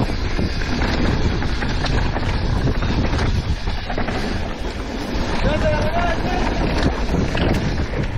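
Wind buffeting an action camera's microphone, with the rumble and rattle of a mountain bike riding fast down a rough trail. About five and a half seconds in, a brief wavering pitched sound cuts through for about a second.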